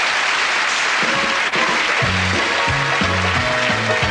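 Studio audience applause dying away as a band strikes up an upbeat intro, a bass line stepping through notes from about two seconds in.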